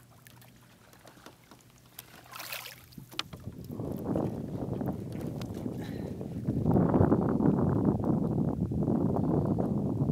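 A brief splash about two and a half seconds in, then wind buffeting the microphone, building from the middle and gusting loudest in the last few seconds.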